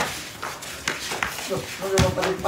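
Voices of players calling out during a pickup basketball game, with a couple of sharp knocks about a second in and a drawn-out raised shout near the end.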